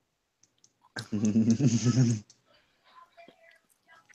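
A short burst of laughter starting about a second in and lasting about a second, pulsing in loudness, followed by faint breathy sounds.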